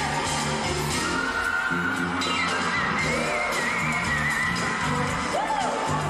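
Live pop music: a woman singing long, high, gliding notes into a microphone over a band, heard through a concert PA.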